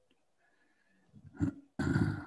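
A man clearing his throat: a short rasp about one and a half seconds in, then a louder one near the end.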